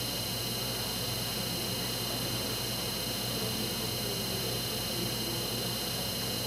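Steady hiss with a low electrical hum and a few faint steady high tones: the recording's background noise and room tone, with no distinct sound event.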